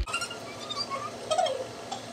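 Automatic pancake machine running, its rollers pushing a freshly cooked pancake out of the slot, with a few light clicks and faint squeaks.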